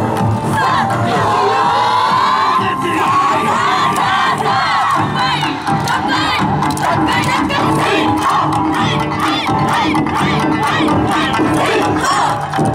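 A yosakoi dance team shouting and chanting together, many voices overlapping, with the music dropped low. In the second half the wooden clacks of naruko clappers rattle in over the voices.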